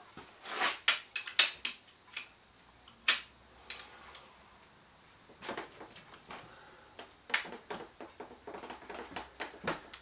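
Steel hand tools clinking and scraping on a bare motorcycle engine as a spanner and Allen key are fitted to the crankshaft end to undo the ignition rotor bolt. The sound is a series of sharp separate clinks with quieter scraping between them; the loudest come about a second and a half in, three seconds in and seven seconds in.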